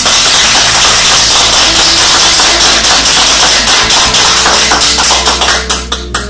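A small group clapping together in a loud, steady round of applause that fades near the end.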